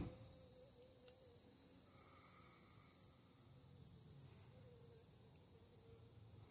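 Near silence with a faint, steady, high-pitched insect chorus.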